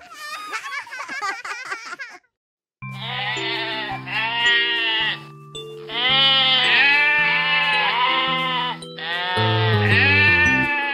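Cartoon sheep bleating again and again over the held chords and bass of a children's song intro. Each bleat lasts about a second. It comes in after a short wobbling sound effect and a half-second of silence about two seconds in.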